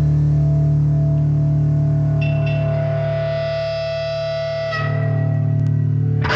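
Live rock band with distorted electric guitars holding long, ringing sustained notes over a steady bass drone. A new high note is held from about three seconds in, and the chord shifts just before five seconds.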